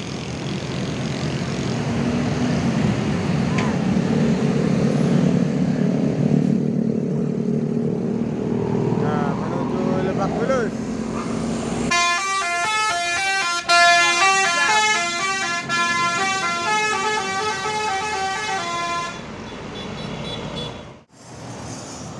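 Intercity bus's diesel engine rumbling louder as the bus pulls up close. About twelve seconds in, its multi-tone musical 'telolet' horn plays a stepping tune for about seven seconds, then stops.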